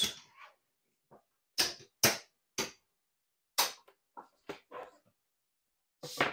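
A run of sharp, irregular clacks and knocks, about eight of them, the loudest about two seconds in. They are casino chips being set down and stacked on a craps table's felt layout.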